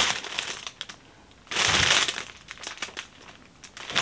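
Clear plastic bag around a folded T-shirt crinkling as it is handled, with the loudest burst of rustling about a second and a half in.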